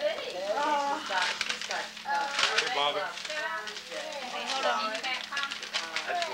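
Indistinct voices talking through a home camcorder microphone, with a few brief crackles and a faint steady hum underneath.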